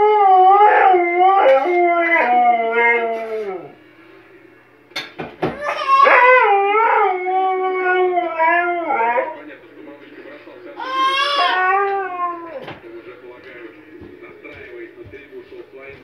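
A husky howling in three long, wavering howls that bend up and down in pitch, the first breaking off about four seconds in and the last ending a little past the middle; quieter sound follows.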